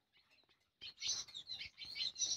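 Faint, high bird chirps, a few short calls starting about a second in.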